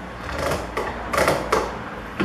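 Bar clamp being worked to pull glued pine slats into their frame: a few quick mechanical strokes from the clamp, the loudest just after a second in, with a sharp click about a second and a half in.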